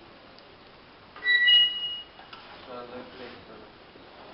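A brief high-pitched metallic squeal lasting under a second, from the steel pouring shank and crucible ring as the bronze-filled crucible is tipped back upright after a pour. A short spoken word follows.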